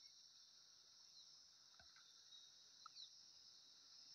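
Near silence with a faint, steady, high insect chorus in the background.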